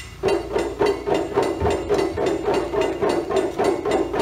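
Wooden clicks of taiko drumsticks (bachi) struck in a steady rhythm, about four a second, by a massed taiko ensemble keeping time without the drum heads.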